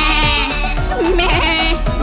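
A cartoon sheep bleating with a quavering voice over children's song backing music with a steady beat.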